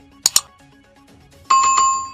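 Subscribe-button animation sound effects: a quick double click about a quarter second in, then a bright bell chime struck about three times in quick succession from a second and a half in, ringing on, over faint background music.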